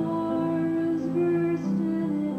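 A woman singing a slow melody with long held notes over acoustic guitar accompaniment, recorded live.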